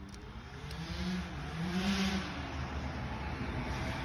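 A vehicle engine revving, its pitch rising and falling a couple of times and growing louder.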